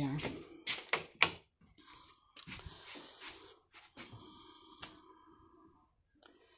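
Wall light switches being flipped: a few sharp clicks about a second in, and two more later on. A faint steady hum sets in partway through.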